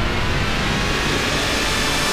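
Outro logo sound effect: a loud sweeping whoosh with a deep rumble underneath, leading into the start of the closing theme music.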